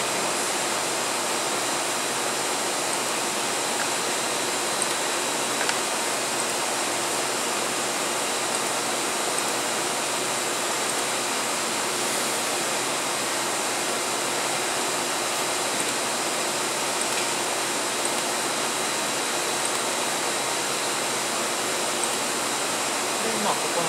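Steady, even rushing noise of running equipment, with a faint high steady tone held throughout. A couple of faint clicks come about five seconds in.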